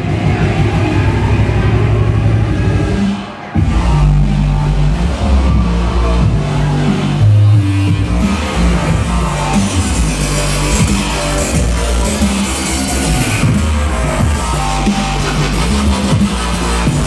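Loud electronic dance music from a DJ set over a club PA, heavy in the bass. About three seconds in the music briefly drops out, then the bass line comes back in.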